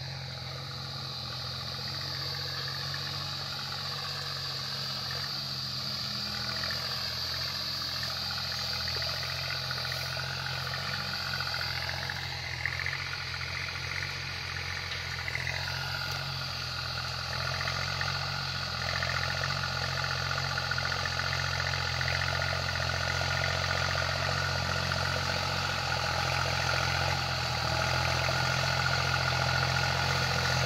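Tractor engine running steadily under load while pulling a disc harrow through a field, growing gradually louder as it comes nearer.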